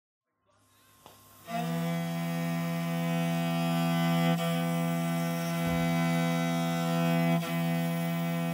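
A horse head fiddle (morin khuur) holds one long, steady bowed note. It begins about a second and a half in, after a silent start with a faint click.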